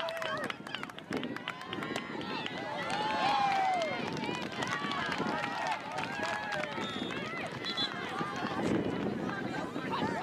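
Several voices calling and shouting across an open soccer field during play, overlapping one another in short calls, from the teenage girls' teams and people on the sidelines.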